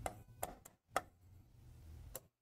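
Pen tip tapping against an interactive board's screen while drawing: four light, sharp taps in the first second, then near quiet over a faint low hum.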